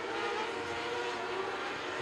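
Winged micro sprint cars' 600cc motorcycle engines running flat out on a dirt oval: a steady, even drone of several overlapping engine notes.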